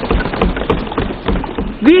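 Many members of Parliament thumping their desks in approval, a dense run of irregular, overlapping knocks. It dies away as a woman's voice resumes near the end.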